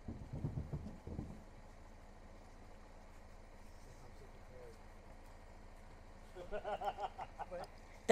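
Faint, steady low rumble, with a few low knocks in the first second or so and faint distant voices from about six seconds in.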